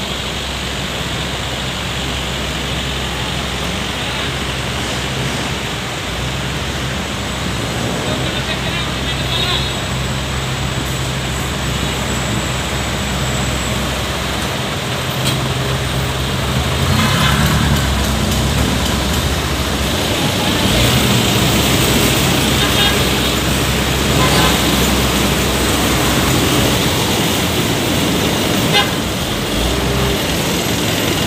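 Busy city-street traffic: jeepneys, vans and buses running slowly and idling in a jam, with a steady low engine hum that gets louder about halfway through. Passersby talk, and a vehicle horn toots briefly.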